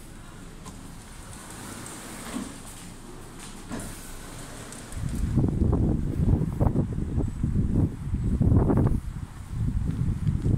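Wind buffeting the phone's microphone in irregular gusts, a loud low rumble that sets in about halfway through after a quieter stretch indoors.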